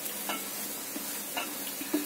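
Wooden spatula stirring a grated coconut and jaggery mixture in a nonstick pan over heat: a steady sizzle with a few short scrapes of the spatula.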